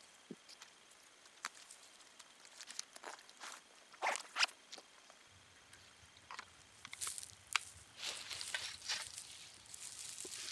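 Rustling in dry grass and leaf litter with scattered sharp clicks, like footsteps and handling. In the second half a plastic trail camera is being handled and opened on its post, with short bursts of rustling and clicking.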